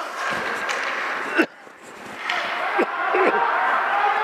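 Ice hockey rink ambience: crowd voices and skates on the ice, with sharp knocks of stick and puck. One loud knock comes about a second and a half in, after which the noise drops suddenly and then builds back up.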